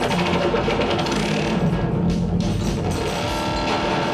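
Live electronic music played on synthesizers and electronic gear, loud and dense, with drum-like percussion and held synth tones, one held tone standing out near the end.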